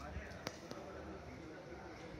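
Indistinct murmur of distant voices over a low hum, with a sharp click about half a second in and a fainter click shortly after.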